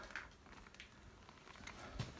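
Near silence with faint handling noise as a motorcycle rear wheel is eased out of the swingarm, and one small click near the end.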